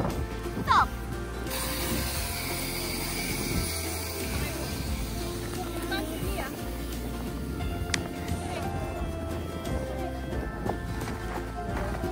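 Background music with steady held notes and a bass line.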